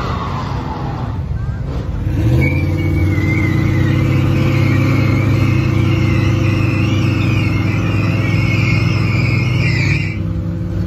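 Car engine held at high revs with tyres squealing in a wavering screech, starting about two seconds in: a burnout or donut in progress.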